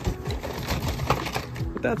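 Torn cardboard backing cards and plastic blister packs rustling, crinkling and clicking as a hand rummages through a bin of them.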